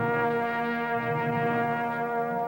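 Orchestral music: the brass hold a loud sustained chord that enters at the start and stays steady.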